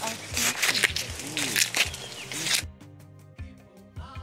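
Dry maize husks rustling and tearing as cobs are stripped and handled, over background music. About two-thirds of the way through the rustling cuts off suddenly, leaving only the music with a steady beat.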